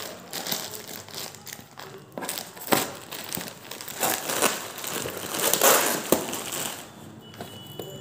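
Plastic courier mailer bag crinkling and crackling as it is pulled open and off a cardboard box, in irregular bursts with a couple of sharp snaps; it quietens near the end.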